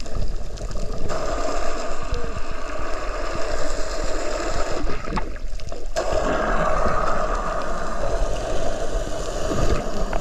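Scuba diver's exhaled bubbles rushing and gurgling up past an underwater camera. It is one long exhalation, about a second's pause for a breath, then another long exhalation.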